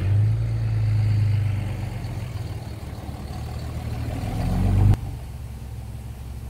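Car engine and road noise heard from inside the cabin while driving: a steady low drone that climbs in pitch and loudness as the car speeds up, then cuts off abruptly about five seconds in, leaving a quieter hum.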